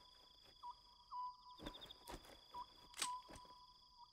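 Faint night ambience of insects trilling: steady high thin tones with a short chirp repeating every half second or so, and a few soft taps about halfway through and near three seconds in.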